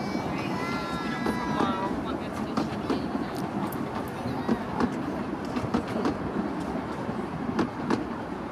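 Carriages of a 12-inch-gauge miniature railway train rolling slowly past, with a steady rumble and irregular sharp clicks of the wheels over the rail joints.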